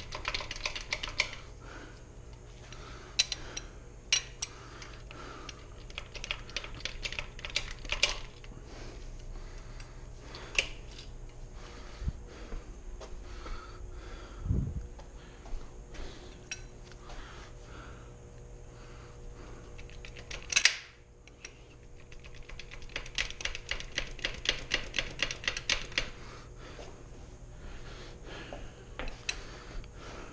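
Hand ratchet clicking on the main bearing cap bolts of an upside-down V8 engine block, with scattered metal clinks of tools and caps. About two-thirds of the way in there is a single sharp knock, then a quick run of ratchet clicks.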